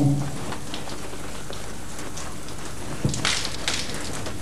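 Shower spray running steadily, water splashing on a body and a tiled floor, with a brief splash or movement about three seconds in.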